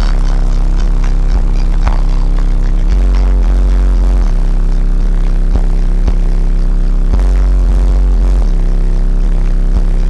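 Extremely loud, bass-heavy music played through a car audio system of eight Fi Audio Delta 15-inch subwoofers, heard inside the vehicle's cabin. The deep bass notes dominate, switching in sections every second or few.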